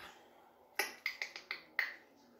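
A quick run of about six short clicks and smacks in the second half, as a gloved hand presses a swipe tool into wet acrylic paint on a tile to pick some up.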